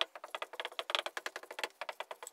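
Dry-erase marker writing on a whiteboard: a quick, uneven run of short squeaks and taps as the letters are written, with a short pause near the end.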